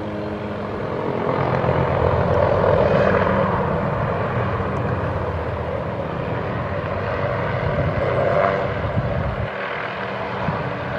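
An MD 500-type light turbine helicopter hovering close by: steady rotor and turbine sound that swells a second or two in and again near the end.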